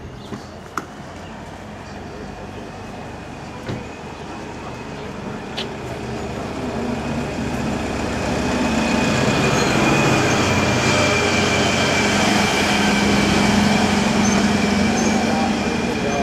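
A heavy lorry's engine running with a steady high whine over it, growing louder through the first half and staying loud for the rest.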